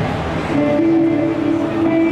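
Live band music: about half a second in, a long sustained note comes in and is held, stepping up in pitch and later back down.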